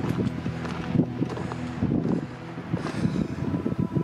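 Footsteps on a rocky limestone trail, with wind buffeting the microphone over a steady low hum.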